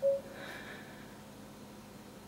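A short, single-pitched beep right at the start from the refrigerator's touchscreen, then faint room tone with a soft breath.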